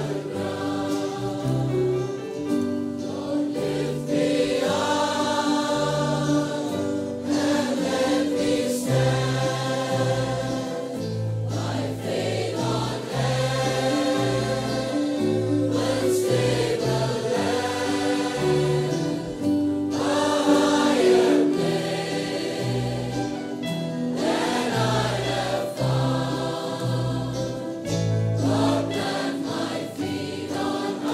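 A choir singing a hymn.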